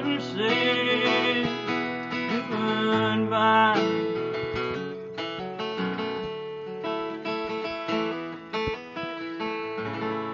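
Acoustic guitar strummed and picked, with a man's long sung notes over the first four seconds. Then the guitar plays on alone, its chords ringing and slowly getting quieter.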